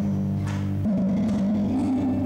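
Live music: a woman singing held notes into a microphone over acoustic guitar, with the notes changing a little under a second in.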